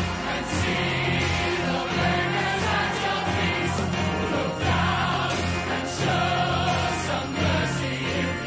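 A choir of voices singing over an orchestra with a steady beat, in the manner of a musical-theatre ensemble number.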